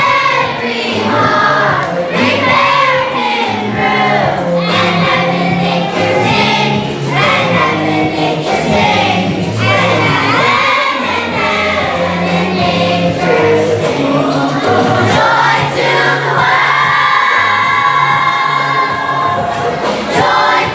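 Children's choir singing a Christmas song together over instrumental accompaniment, with steady low bass notes under the voices.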